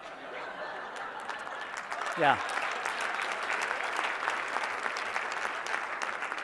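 Audience applauding, building up over the first second and then holding steady. A man says a short "yeah" about two seconds in.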